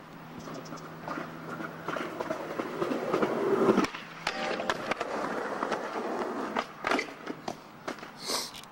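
Skateboard wheels rolling on concrete, growing louder as the board approaches over the first few seconds. Then a ringing metallic scrape as the board slides along a steel handrail in a backside lipslide, followed by sharp clacks near the end.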